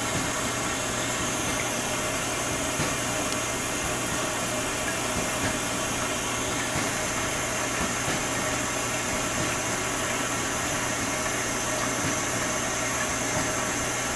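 A propane torch burning with a steady hiss, a chunk of ice held in its flame. A steady low hum runs underneath.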